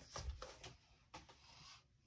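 Near silence, with a few faint soft rustles and taps of a cardstock scrapbook page being handled and laid down in the first half second or so.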